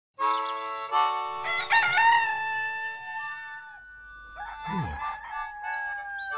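A cartoon rooster crowing a long, drawn-out cock-a-doodle-doo with a wavering pitch, over light background music. A short falling sound follows near the end.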